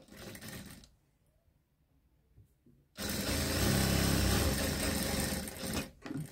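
Industrial sewing machine stitching through fabric in a steady run of about three seconds, starting halfway through and stopping just before the end. A brief burst of sound comes near the start.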